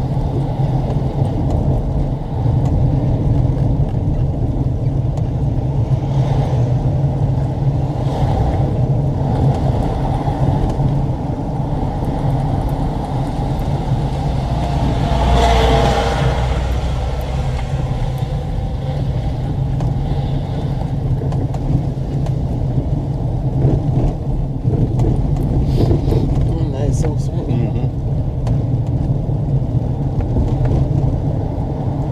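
Car engine and road noise heard from inside the cabin while driving, a steady low hum throughout, with a louder swell about halfway through as the car takes a bend.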